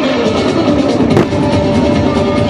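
Music with sustained tones, with one sharp crack just over a second in.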